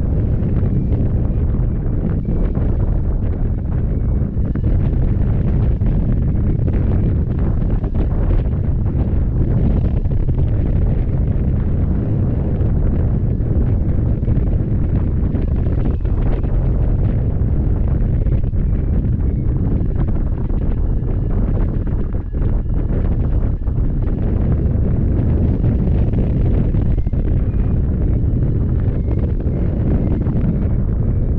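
Airflow buffeting the microphone of a camera mounted on a hang glider in flight: a loud, steady, low rumble of wind noise. Faint short high beeps come through now and then.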